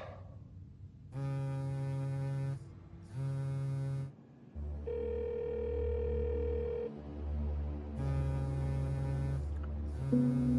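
A phone call ringing: a buzzing ring tone in pairs of bursts about a second long, the pair coming again about seven seconds later. From about halfway a low steady music drone sits beneath it.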